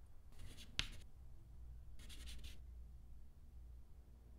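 Chalk scratching on a blackboard in two short strokes, the first about a second in and the second about two seconds in, with a sharp tap of the chalk against the board during the first.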